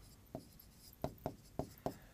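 Marker writing on a whiteboard: a handful of short, faint strokes, one about a third of a second in and the rest close together in the second half.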